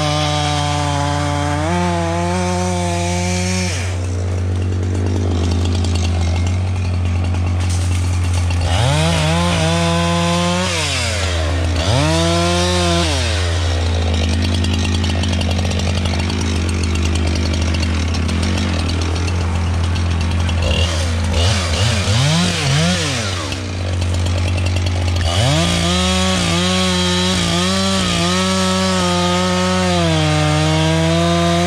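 Husqvarna chainsaw running at full throttle, making a felling cut into the base of a standing tree. For most of the middle the engine drops to a lower pitch and is revved up and down several times, then it goes back to cutting at full throttle near the end.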